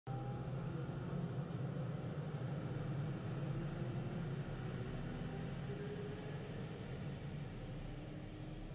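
Steady low aircraft engine drone with a faint, slowly rising whine, starting abruptly and slowly fading.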